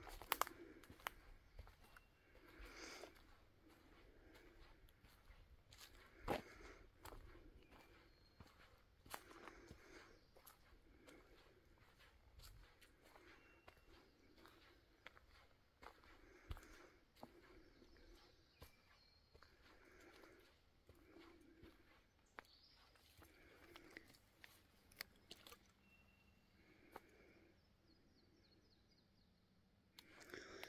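Faint footsteps of a hiker walking on a dirt and leaf-litter forest trail, about one step a second, with a few sharp clicks along the way.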